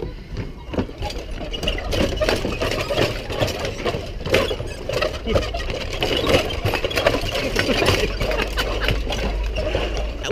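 Footsteps knocking irregularly on the plank deck of a rope suspension bridge, with a steady low rumble of wind on the microphone.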